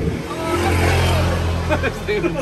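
A motor vehicle's engine running close by, swelling to its loudest about a second in and then easing off as it passes, over scattered background voices.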